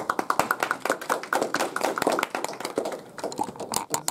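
A small audience applauding, many hands clapping quickly and unevenly, thinning to scattered claps near the end.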